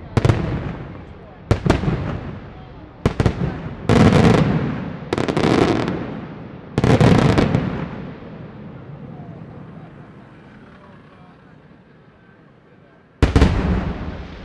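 Aerial firework shells bursting: a quick run of sharp bangs, several with long rolling echoes, over the first seven seconds. Then a fading lull, and one more loud bang about a second before the end.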